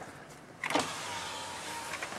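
A car's electric power window motor running for about a second, a thin steady whine over a rush of noise, starting about two-thirds of a second in.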